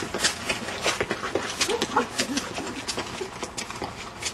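Hurried footsteps, several a second, as people move over outdoor ground, with a few brief men's vocal sounds about halfway through.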